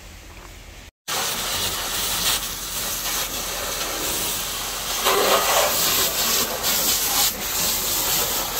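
Firefighter's hose jetting water onto burning rubble: a loud, steady hiss that starts abruptly about a second in and swells around five seconds in.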